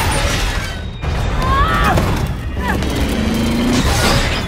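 Film sound mix of a stricken turboprop cargo plane going down: a dense, loud low rumble of engines and rushing air with booming impacts. A person screams a couple of times in the middle of it.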